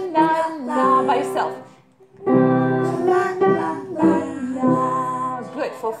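Piano playing short melodic phrases of single notes while a voice sings the same pitches, in two phrases with a brief pause about two seconds in.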